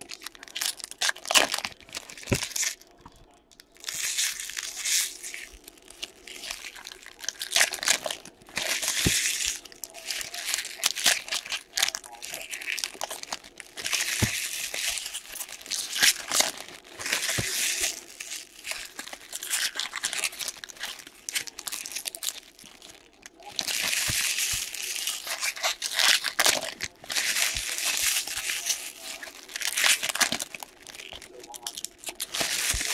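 Foil-wrapped hockey card packs being torn open and their wrappers crinkled and crumpled by hand, in repeated bursts of a second or two with short pauses between.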